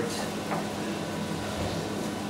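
Steady low hum of commercial kitchen equipment, with a faint soft tap about half a second in as a knife slices a seared razor clam on a wooden board.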